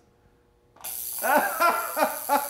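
A violet wand switches on a little under a second in with a steady, high-pitched electrical hiss and buzz as it drives a neon bulb. Laughter follows over it.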